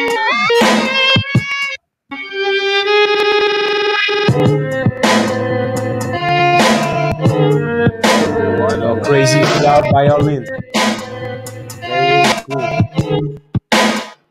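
A music sample played back in chopped pieces from a sampler: a pitched melody that stops and restarts abruptly, with a brief dropout just before two seconds in, as the sample is cut into pads.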